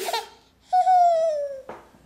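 Baby crying: one long high-pitched cry, about a second long, falling slightly in pitch.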